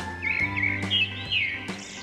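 Background music with steady held notes, with bird chirps twittering over it in short, high, gliding calls during the first second and a half.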